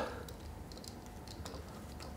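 Faint, scattered clicks of a flathead screwdriver working the center screw that holds the distribution screen in an E61 espresso grouphead, over a low steady hum.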